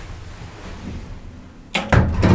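Low steady hum inside a traction elevator car, then two sharp clunks close together near the end.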